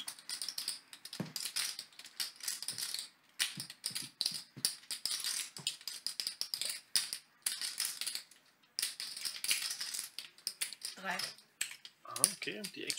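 Poker chips clicking and clattering against each other in quick irregular runs as players handle and stack them at the table.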